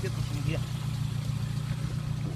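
Car engine idling, a steady low rumble.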